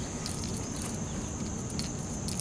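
Outdoor ambience: a steady, high insect buzz over a faint low rumble, with a few light clicks.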